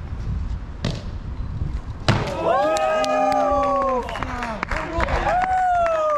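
A hard thud about two seconds in as a freerunner lands a front flip dropped from four or five metres onto concrete, followed at once by onlookers' long, drawn-out shouts, which rise again near the end.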